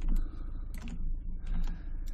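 Several sharp clicks of a computer mouse and keyboard keys, spaced irregularly, over a low steady hum.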